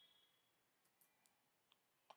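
Near silence, with a few very faint clicks near the middle.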